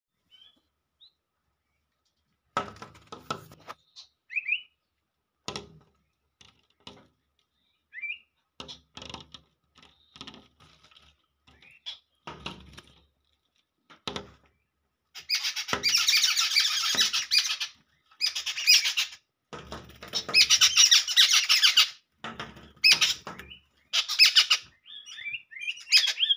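Sparrows and yellow bulbuls chirping: short, scattered calls at first, then a run of loud, dense chattering from the middle for several seconds. Scattered low thumps and rustles come and go throughout.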